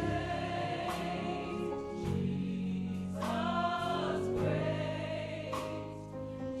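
Gospel choir singing held chords, changing chord every second or two, over a church band with keyboard and bass guitar.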